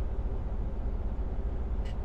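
Semi-truck's diesel engine idling steadily, heard from inside the cab as a low, even rumble.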